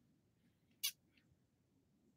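Near silence: room tone, broken once a little under a second in by a very short high-pitched sound.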